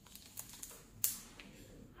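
A few soft clicks and rustles from a hand in a powdered latex surgical glove flexing and moving, the sharpest click about a second in.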